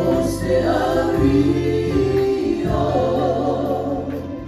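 A church worship team singing a Samoan gospel song together, the voices swelling in at the start, over a band of keyboard, guitars and bass.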